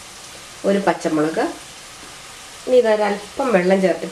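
Speech only: a voice talking in two phrases, one starting about half a second in and one near the end, with a faint steady hiss in the pause between.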